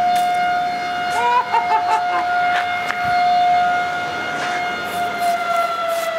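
A factory siren sounding one long, steady wail, the signal for the lunch break. Its pitch sags slightly near the end.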